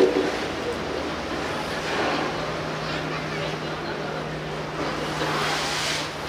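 Steady background noise with a constant low hum, and faint voices in the background; a short louder sound right at the start.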